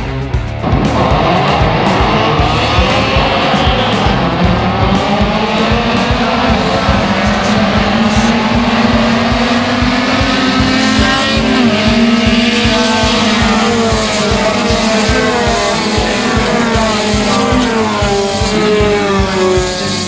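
A pack of race cars accelerating hard together, engines revving up and shifting gears, the sound rising sharply about a second in. Background music with a steady beat runs underneath.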